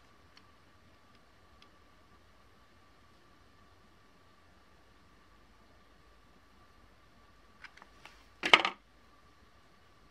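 Quiet room with a faint steady high hum and a few small clicks, then about eight and a half seconds in one sharp clack as a plastic hot glue gun is set down on a plate.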